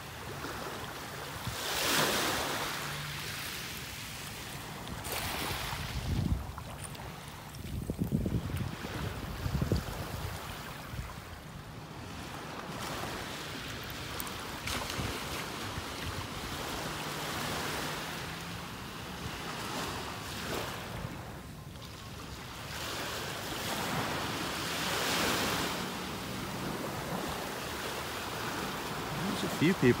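Small, gentle Gulf of Mexico waves washing up on a sandy shore, swelling and fading every few seconds, with some wind rumbling on the microphone.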